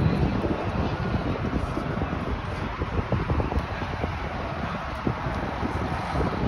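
Wind blowing on the phone's microphone: a steady, low, noisy rumble over the background of people gathered nearby.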